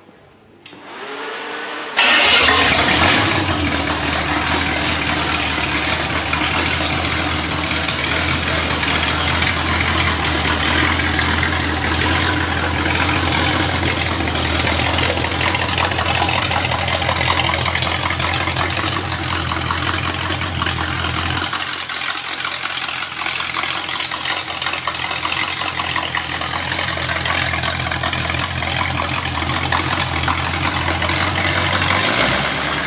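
Rebuilt Chevrolet small-block V8 on an engine test stand, cranked briefly by the starter and catching about two seconds in. It then runs steadily and loudly through open exhaust headers. The already broken-in engine idles evenly, and its lowest tones thin a little about two-thirds of the way through.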